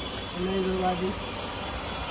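Renault Kwid three-cylinder petrol engine idling quietly and evenly just after a full overhaul; the owner calls it silent. A short held voice hum sounds over it about half a second in.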